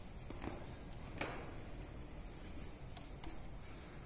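Quiet room with a few light, scattered clicks and taps, about five in four seconds, the clearest about a second in, over a low steady rumble.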